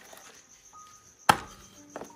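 A single cleaver chop through boiled chicken onto a wooden chopping board, about a second and a half in, over the steady chirping of crickets.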